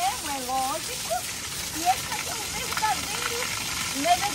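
Steady rush and splash of a stream of water falling from an outdoor shower spout onto a person and a wet rock floor.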